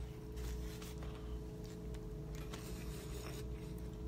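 Faint rustling and light knocks of a phone being handled, over a steady low hum in a small room.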